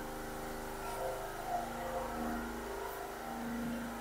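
Steady machine hum of several even tones, running unchanged throughout.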